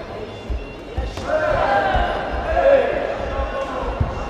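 Dull thumps from Muay Thai fighters' footwork and blows in the ring, with loud shouting that starts about a second in and runs for a couple of seconds.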